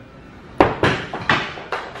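Thrown axe hitting hard about half a second in: one sharp knock, then three or four lighter metallic knocks and clatters that fade over about a second.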